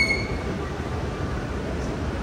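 Escalator running with a steady low rumble, and a brief high-pitched squeal right at the start.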